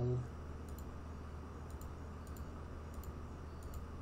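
Computer mouse clicking: a series of light clicks at an uneven pace as letters are picked one by one on an on-screen keyboard, over a steady low electrical hum.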